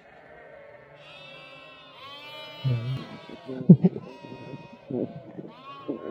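Newborn Kangal puppies whimpering and squealing in high, wavering cries, several overlapping, with a few short low vocal sounds in between.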